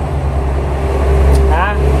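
A steady low rumble with no clear rhythm or change.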